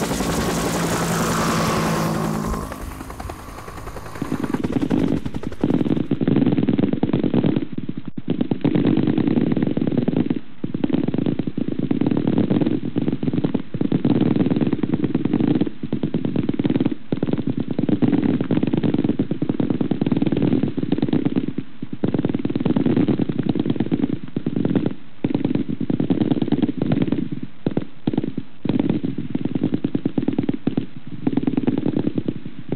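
A sustained war sound effect of automatic machine-gun fire: long rapid bursts broken by brief pauses, thin and muffled like an old recording. It is preceded in the first couple of seconds by held musical notes fading out.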